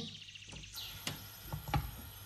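Faint bird chirping in the background, with a few light clicks in the second half.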